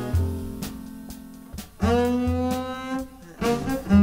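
Jazz recording: saxophone and double bass with drums, with a long held note entering about two seconds in over bass notes and cymbal strokes.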